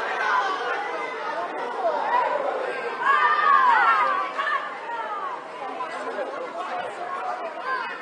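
Overlapping voices of children and adults calling and chattering across a youth football pitch, with a louder, high-pitched shout about three seconds in.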